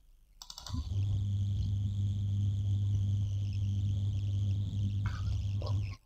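A steady low hum with a faint hiss, starting suddenly about half a second in and cutting off abruptly just before the end.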